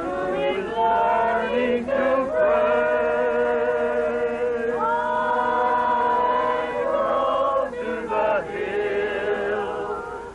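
A group of men and women singing together unaccompanied, in long held notes with short breaks between phrases; one note rises and is held from about five seconds in.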